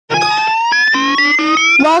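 A man's voice holding one long, loud sung note into a close microphone, with a second tone rising slowly in pitch beneath it, breaking into the spoken word "welcome" near the end.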